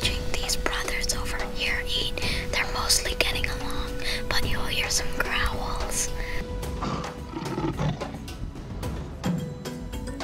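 Whispered speech close to the microphone over background music that holds one steady note.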